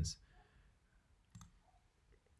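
A single short click from a computer mouse button or trackpad, about one and a half seconds in, in an otherwise quiet room.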